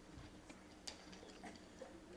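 Near silence: a low steady hum with a few faint clicks, the loudest a little under a second in, from papers being handled at a lectern.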